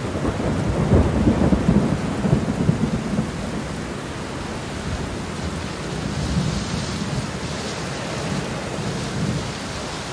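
A low rumble over a steady rushing hiss, like thunder and rain, loudest and most uneven in the first three seconds and then settling to a steady hiss.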